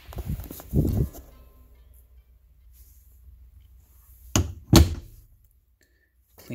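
A few knocks and thumps in the first second, then two sharp, loud thunks close together about four and a half seconds in, from things being handled in a small truck cab.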